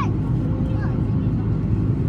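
Steady low rumble of jet engines and airflow heard inside an airliner cabin in cruise flight, with a faint brief voice about a second in.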